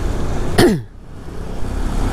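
Motorbike riding rumble picked up by a helmet mic, broken about half a second in by a single short, loud cough with a falling pitch. After the cough the sound briefly drops quieter.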